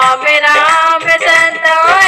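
A solo voice singing a Hindi devotional bhajan to Ram, holding long notes that glide and waver in pitch, with short breaks between phrases.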